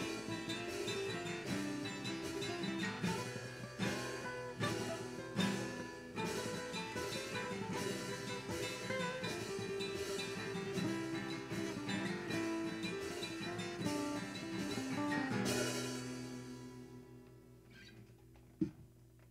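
Blue Sky acoustic-electric guitar strummed in a slow jam, chord after chord in a steady rhythm, its low E string's intonation a little off according to its owner. Near the end a final chord is struck and left to ring, fading away.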